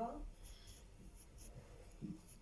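A spoken line ends just at the start, then a quiet pause filled with faint rustling and scratching.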